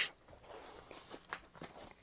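Faint rustling and a few soft taps as tennis shoes are handled and put on.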